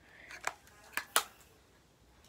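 Handling noise: four short, sharp clicks and taps in two pairs, about half a second and about a second in, the last the loudest.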